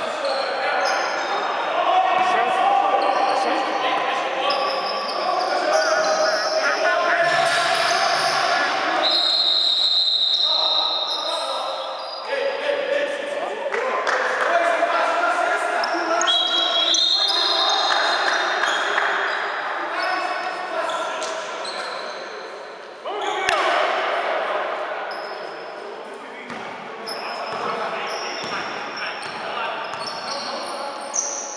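Basketball being dribbled and bouncing on an indoor court during a game, with players' shouts and calls echoing around a large gymnasium.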